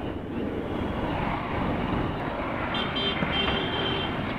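Wind and road noise from a moving motorcycle, with its engine running and light street traffic around it. A short high-pitched tone sounds about three seconds in.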